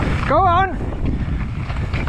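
Wind noise on a mountain bike POV camera's microphone over the rumble of tyres rolling on a dirt trail. About half a second in, a short wavering vocal whoop.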